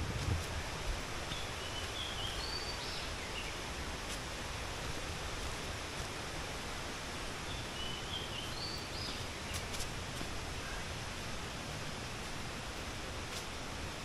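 Steady outdoor background noise, with a bird calling a short phrase of high chirps twice, several seconds apart.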